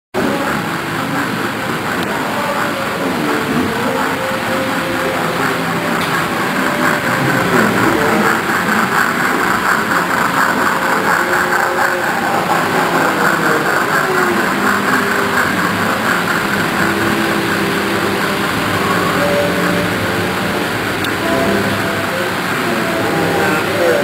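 Model railway train running past close by on the layout track, a steady whirring rattle of motor and wheels on rail that grows louder about seven or eight seconds in.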